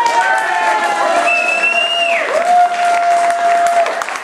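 An audience applauding and cheering as a fiddle-and-guitar folk tune ends. A few long, drawn-out cheers slide in pitch, one high one falling away around the middle, and a lower one is held through the second half.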